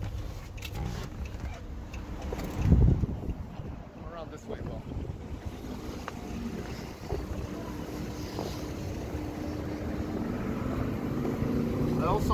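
A single dull thump about three seconds in, then the rustle and knocks of a handheld camera being carried, over a steady low hum.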